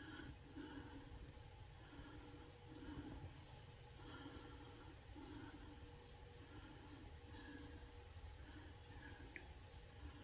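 Near silence: quiet room tone with a faint low pulsing hum and no distinct events.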